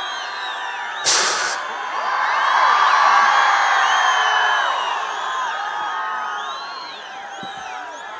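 Large crowd cheering, whooping and whistling, with many overlapping whistles. It swells to its loudest a couple of seconds in and then fades. A short, sharp hissing blast sounds about a second in.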